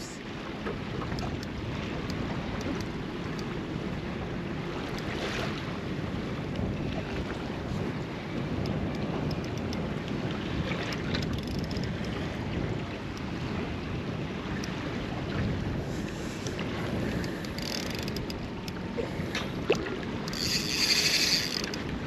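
Wind buffeting the microphone over small waves lapping at a boat, a steady low rushing. Near the end comes a brief high-pitched whirr, the loudest sound here.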